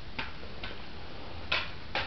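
Four short clicks of plastic CD cases being handled and set down, the loudest about one and a half seconds in.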